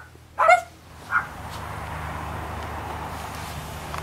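A dog gives a short yip about half a second in and a fainter one just after, followed by steady outdoor background noise.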